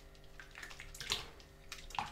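A hand swishing and splashing through soapy dishwater in a sink, in a few uneven splashes, the loudest about a second in.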